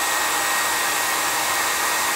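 Small handheld dryer running steadily, blowing air onto wet paint and modeling paste on a journal page to dry it. An even rush of air with a faint motor whine.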